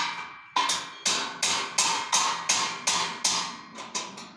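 Hammer blows on a stainless steel bed frame during assembly, about three strikes a second, each leaving a short metallic ring.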